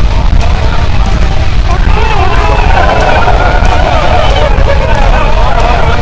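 A loud, steady low rumble, with several voices yelling together from about two seconds in.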